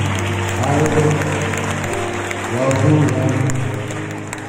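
A live band playing a song, a melodic line held and gliding over the accompaniment, with audience clapping throughout.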